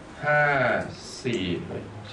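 Speech only: a man counting aloud in Thai, a long drawn-out "ห้า" (five) followed by a short "สี่" (four).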